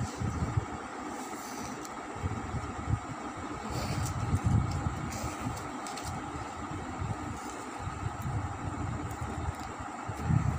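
Uneven low rumbles and soft knocks from handling near the microphone, over a steady faint hum. A few faint crackles come through about a second and a half in and again around four to five seconds.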